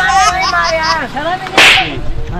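A voice, then about one and a half seconds in a single short, loud swish of hissing noise: a whoosh sound effect laid over a cut between shots.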